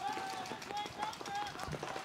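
Field sound from a live paintball point: paintball markers firing in quick, irregular pops, with faint shouts in the background.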